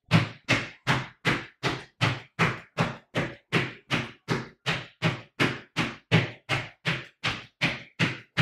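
Sneakered feet landing flat on a bare floor in quick, stiff-legged pogo jumps: an even run of thuds, about two and a half a second, each a whole-foot smack.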